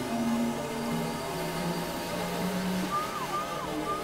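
Experimental electronic synthesizer noise music: a dense, hissy drone with low held tones that step in pitch, joined near the end by a run of short falling blips.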